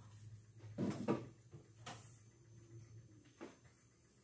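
A few light knocks and clatters of kitchen items being handled at a counter. The loudest come about a second in, with single ones near two seconds and past three seconds, over a faint low hum.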